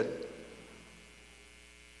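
Faint steady electrical hum from the microphone and sound system in a pause between spoken phrases, with the last word fading away at the start.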